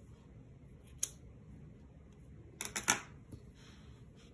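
Scissors cutting through thick cotton t-shirt yarn: one sharp click about a second in, then a quick run of three or four snips nearly three seconds in.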